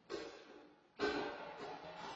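Two ringing metal knocks about a second apart, each dying away slowly: the stove's metal flue pipe being knocked while it is fitted.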